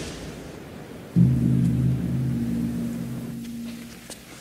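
A quiet fading tail of music, then a low held musical note that starts suddenly about a second in and slowly dies away.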